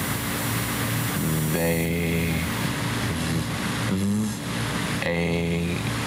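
A man's voice slowly sounding out a word from letter tiles, with a few drawn-out vowel and nasal sounds that glide in pitch, over a steady tape hiss.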